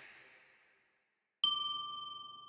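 After a near-silent pause, a single bright chime rings out about one and a half seconds in and slowly dies away. It is a workout interval-timer ding marking the end of the rest and the start of the next exercise.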